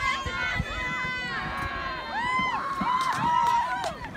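Several voices shouting and cheering at once, overlapping yells that rise and fall in pitch, loudest toward the end.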